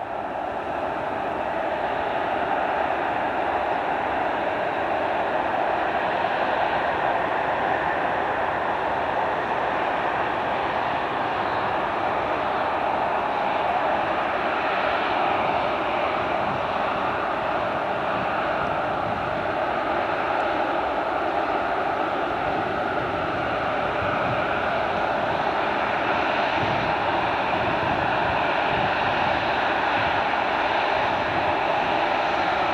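Airbus A380 taxiing with its four jet engines at low taxi power, a steady engine rush and whine. It swells over the first few seconds as the aircraft draws closer, then holds steady.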